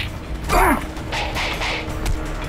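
Dubbed fight-scene sound effects for a stick fight: a falling, pitched sweep about half a second in, then a couple of quick swishes, over a low background score.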